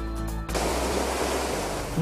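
The end of a news theme's music, then, about half a second in, the steady rush of fast-flowing river water.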